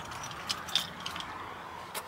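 Faint handling noise: a few light clicks and rattles over a low steady background.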